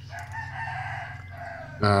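A drawn-out bird call lasting about a second and a half.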